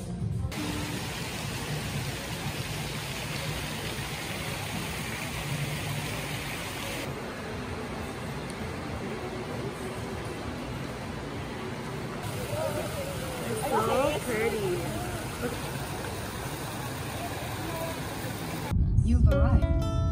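Steady background hubbub of a shop with a few indistinct voices. Near the end it cuts to the low rumble of a moving car, with plucked-string background music.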